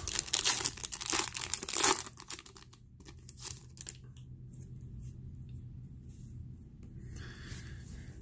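Foil wrapper of a trading-card pack crinkling and tearing as it is opened, loudest over the first two seconds. After that come fainter rustles and clicks of the wrapper and cards being handled.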